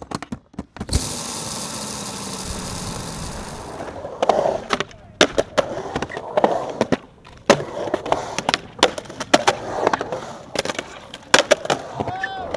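Skateboard on OJ Insane-A-thane urethane wheels rolling over smooth concrete with a steady hiss. About four seconds in it gives way to a run of sharp clacks and knocks as the board's tail, trucks and wheels hit the concrete during tricks.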